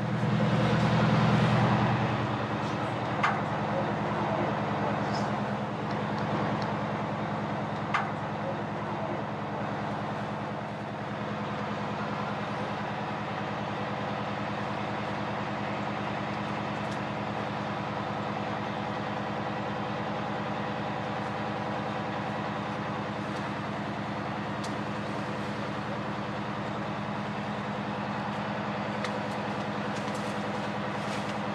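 Fire truck engine running steadily to power its raised aerial ladder, a constant low drone that is a little louder in the first couple of seconds. Two sharp clicks come a few seconds apart near the start.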